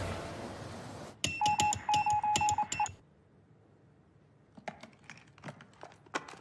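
Telegraph key tapping out Morse code: sharp key clicks with a quick run of short beeps, stopping about three seconds in. A few fainter clicks follow near the end.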